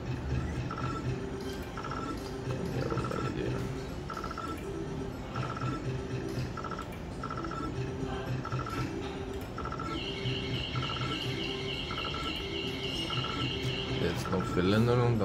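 Novoline Book of Ra slot machine playing its electronic bonus jingle: short beeps repeat a little under once a second over a lower note pattern. At about ten seconds in, a fast, high warbling tone joins as the machine tallies winnings into the bank.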